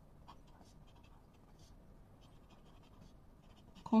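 Pen tip scratching faintly on paper in many short strokes as handwriting is written.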